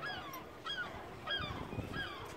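A gull calling: a string of short, falling notes, about three in two seconds, evenly spaced. A low rumble comes in about one and a half seconds in.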